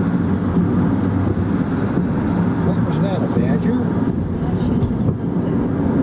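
Steady road and wind noise of a car driving at highway speed, heard from inside the cabin, with a faint singing voice from the car stereo underneath.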